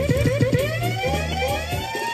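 Reggae music with an electronic siren effect: fast repeated rising chirps, about eight a second, and a slower upward sweep that levels off, over a pulsing bass line.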